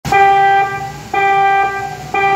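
Alert beeps: two pitched tones, each about half a second long and a second apart, sounding the signal that leads into a civil defence emergency announcement.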